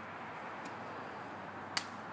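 Faint steady outdoor background noise with a sharp single click near the end, and a fainter click about two-thirds of a second in.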